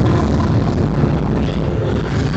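A loud, steady noisy rush with heavy bass underneath from the dance routine's sound system, a non-musical effect passage between the music, recorded distorted on a phone.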